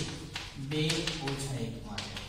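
Chalk tapping and scraping on a chalkboard in several short strokes as characters are written, with a man's voice speaking over it.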